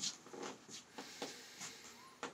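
Faint rustling and scuffing of a person shifting and settling into place, with a few soft clicks scattered through.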